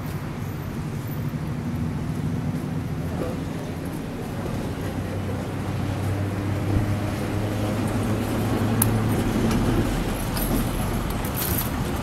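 Steady hum of road traffic with a vehicle drone that builds and fades around the middle. Near the end a vintage tram draws alongside, and high clicks and squeaks of its wheels on the rails are heard.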